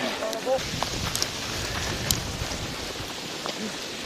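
A voice briefly near the start, then steady open-air noise with a few light clicks and knocks.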